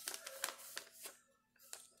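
A sheet of paper being handled and folded in half by hand: a few faint crinkles and taps in the first second or so, then it goes quiet.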